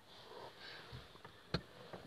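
A man's faint sniffing breath, with a single sharp click about one and a half seconds in.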